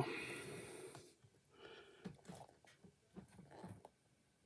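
A man's long breath out, fading away over about a second, as he strains to work a casting free of a silicone mould. It is followed by faint small clicks and rubbing from his hands handling the mould.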